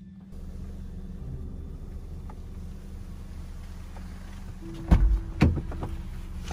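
Steady low hum inside a parked car's cabin, then two loud thumps about five seconds in as the passenger door is opened and someone climbs into the seat.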